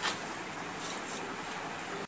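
Steady background hiss, with one short knock at the start as a person gets up off a bed and a couple of faint clicks about a second in.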